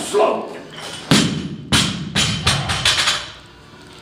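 Loaded Olympic barbell with bumper plates dropped onto a lifting platform. It lands with one heavy thud about a second in, then bounces several times with smaller, quickening knocks that die away over the next two seconds.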